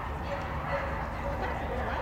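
A dog barking and yipping, with people talking in the background.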